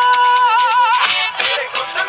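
Background music: a Punjabi song with a solo voice holding a sung note for about half a second, then a wavering ornamented run, with percussion hits coming in about halfway through.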